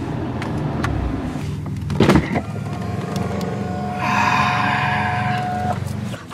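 C7 Corvette's electric seat and steering-column motors whirring for about two seconds near the end as the easy-exit memory moves the seat back from a close-up position. A steady low hum runs underneath, with a short noise about two seconds in.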